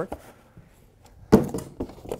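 Cardboard packaging being handled: a quiet stretch, then one sharp thunk a little past halfway and a smaller knock just before the end.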